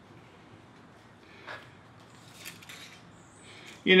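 Quiet shop room tone with two faint, light metallic clicks about a second apart as steel parts and tools are handled on a steel table; a man's voice starts at the very end.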